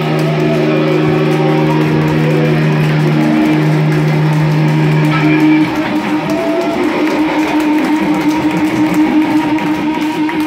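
Live rock band playing loud, electric guitars holding long sustained notes. About five and a half seconds in, the lowest held note drops out and busier strummed guitar takes over, while another held note keeps ringing.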